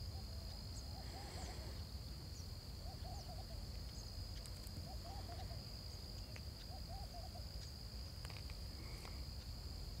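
A bird gives a short run of quick, low hooting notes four times, about two seconds apart, over a steady high-pitched insect drone.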